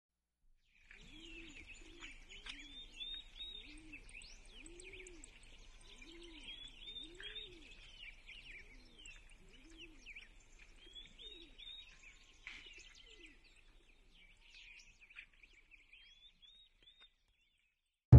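Faint birdsong: several small birds chirping and twittering, with a low, repeated cooing call under them. The calls thin out after about thirteen seconds.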